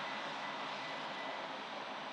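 Steady rush of passing road traffic, easing off slightly.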